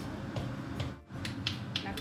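A wooden spatula tossing and mixing a dry minced fish salad in a nonstick wok, with a series of sharp clicks and taps as it strikes the pan.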